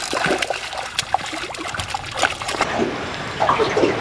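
A hooked sockeye salmon thrashing at the water's surface, with repeated irregular splashes and trickling water.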